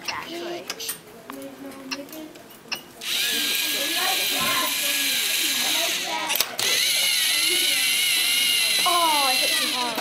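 Lego Mindstorms robot's electric motors and plastic gears whirring steadily as it drives across the table. The whirring starts about three seconds in and breaks off briefly near the middle. Children's voices are faint underneath.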